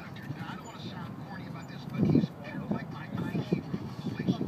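Indistinct voices talking, louder about halfway through, over a steady outdoor background hum.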